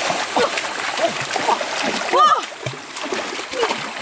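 Water splashing in a shallow rocky stream as people kick and slap at it with bare feet and hands, chasing fish by hand. A person gives a short rising-and-falling cry about two seconds in.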